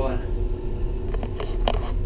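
Passenger elevator car running as it descends toward the ground floor: a steady low hum, with a few sharp clicks in the second half.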